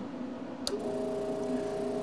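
A click, then the exposure unit's vacuum pump starts up about a second in and runs with a steady hum. The vacuum is being drawn to pull the film negative into contact with the photopolymer sheet.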